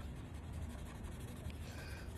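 Marker tip scratching faintly across a board during drawing strokes, over a low steady rumble.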